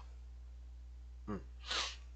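A man's brief 'mm', then a short, sharp breath through the nose just after it, over a steady low electrical hum.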